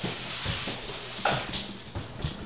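A dog whimpering briefly about a second in, a short call falling in pitch, over a steady background hiss.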